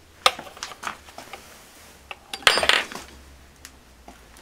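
Metal valve shields and valves being handled on an amp chassis: a sharp click about a quarter second in, a few lighter clicks, then a louder cluster of metallic clinks with a brief ring about two and a half seconds in.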